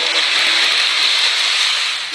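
A loud, steady hissing rush, like escaping steam or spray.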